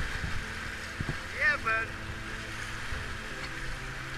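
River rapids rushing and splashing around an inflatable kayak running whitewater. A brief voice call rises and falls about a second and a half in.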